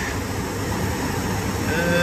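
Steady cockpit noise of a Hawker 800XP business jet in flight: an even rush of airflow and engine drone with a low hum underneath.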